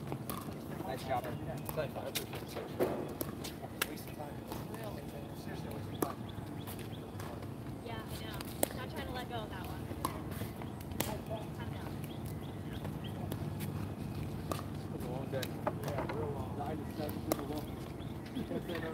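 Indistinct distant voices over a steady low background, with scattered sharp clicks every few seconds.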